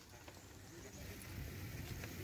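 Bicycle rolling along a paved path with a few light rattles and knocks. A low rumble of wind and handling noise on the phone's microphone grows louder in the second half.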